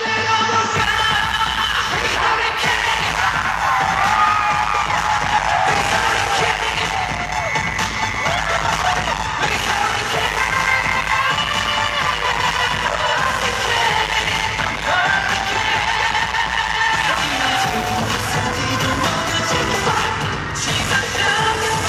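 Loud amplified pop music with singing, a live K-pop performance heard from within the concert audience.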